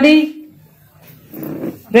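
A woman's voice through a hall's public-address system: the end of one phrase, a pause of about a second with a short breathy sound, then speech again.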